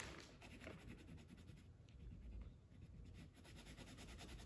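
Faint scratchy strokes of a crayon colouring on a sheet of paper laid on a tabletop.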